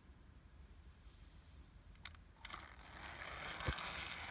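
Playcraft model tank locomotive's small electric motor and gearing running as it moves forward on plastic track, faint at first and getting louder from about halfway in, with a couple of sharp clicks.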